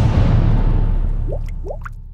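Logo sting sound effect: a loud noisy hit that fades away slowly over about two seconds above a low hum. Three short rising drip-like bloops come near the end.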